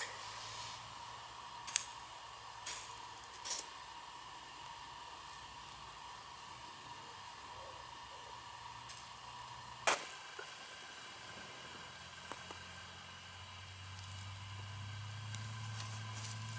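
Lighting a fire in a perforated metal fire box: a few short sharp clicks and handling noises as kindling is worked, the strongest about ten seconds in. Under them are a faint steady hum and a low rumble that swells near the end.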